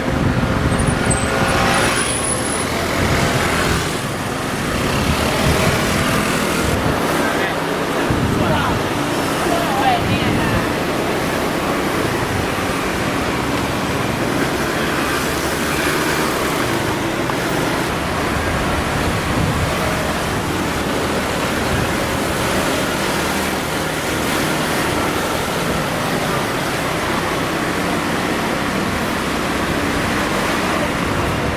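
Steady road traffic noise with indistinct voices mixed in.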